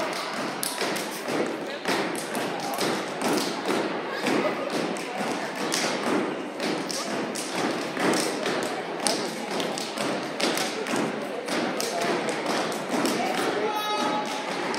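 Rapid, irregular thumps and taps of dancers' footwork on a stage, several strikes a second, with crowd voices underneath.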